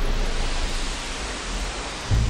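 A steady wash of noise, a synthetic sound effect that fades slowly over the two seconds.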